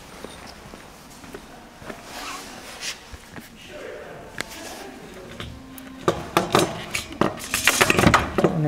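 Faint voices, then a rapid run of sharp knocks and clicks over the last two seconds.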